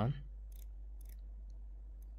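Rotating bezel of a Samsung Galaxy Watch 3 being turned to scroll down a menu: a few faint, sharp clicks about half a second apart.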